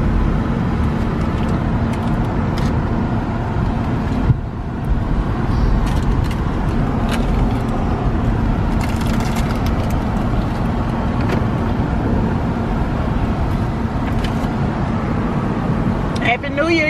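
A car's engine and road noise heard from inside the cabin while driving: a steady low rumble with a steady hum. A single thump about four seconds in is the loudest sound, followed by a brief lull.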